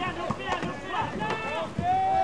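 Several people shouting and calling out, their voices overlapping, with one long held call starting near the end.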